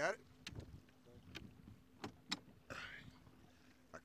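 A handful of sharp taps and knocks as a plastic jug-line float and its line are handled over the side of a boat, over a faint steady hum.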